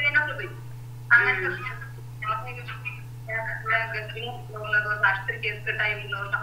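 A person speaking over an online video call, with a steady low hum underneath the voice.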